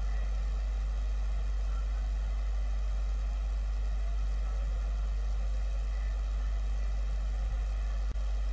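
A steady low hum with a faint even hiss over it, unchanging throughout, with no other sound.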